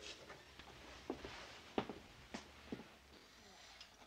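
Quiet room tone with a few faint, short clicks and taps of china and cutlery as a plate of food is served at a table.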